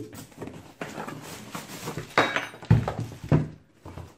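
Cardboard box being opened and handled: flaps rustling and scraping, then two thumps a little over half a second apart late on as the plastic-wrapped power tool inside drops out onto the wooden table.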